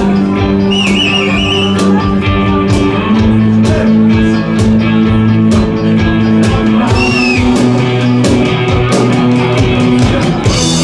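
A live rock band playing an instrumental passage: electric guitars over a drum kit, with the drum beat falling about twice a second. A wavering high note comes in about a second in and again about seven seconds in.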